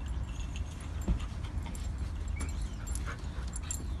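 Huskies play-wrestling: a soft whine and scattered scuffling clicks over a steady low rumble.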